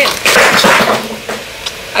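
Plastic ice cube tray being worked to break stuck ice loose from its bottom: a loud noisy crack-and-scrape for most of the first second, then a single sharp click near the end.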